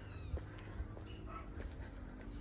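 Faint, brief high-pitched animal calls, a few short chirps or mews with falling pitch, over a quiet low outdoor background.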